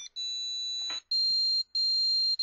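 An Arduino microcontroller playing a tune as a series of high electronic beeps: three notes in a row with short gaps between them, each about half a second or a little longer, the pitch shifting slightly from note to note.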